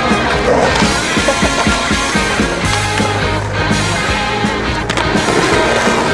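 Skateboard wheels rolling on asphalt with sharp clacks of the board on the pavement, over a rock song with vocals.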